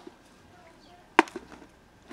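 A plastic food container knocking once on concrete about a second in, with a lighter knock just after.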